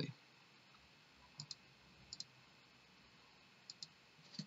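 Computer mouse clicking: three faint double clicks, about a second apart, against near silence.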